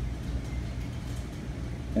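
Steady low machinery hum, with no crushing or impact sounds.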